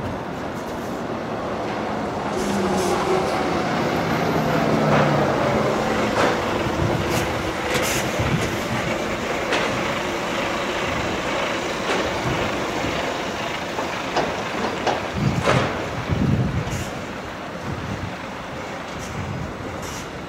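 Construction-site noise: a steady mechanical rumble with a few shifting tones in the first seconds, and scattered knocks and bangs, heaviest a little past the middle.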